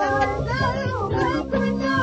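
A woman singing Hassaniya music into a microphone, her high voice gliding and holding notes, over steady low instrumental accompaniment.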